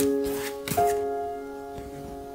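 Background music of held, ringing notes. During the first half second or so, a few short scratchy strokes of a paintbrush dragged across the canvas.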